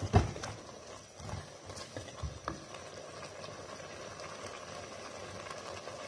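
Wooden spatula knocking and scraping against a clay cooking pot as a thick masala is stirred: one sharp knock at the start, a few lighter knocks over the next two seconds, then only a steady hiss from the simmering masala.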